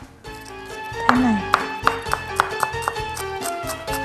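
A chef's knife chopping garlic on a wooden cutting board in quick, even strokes, about three or four a second, starting about a second in, over background music.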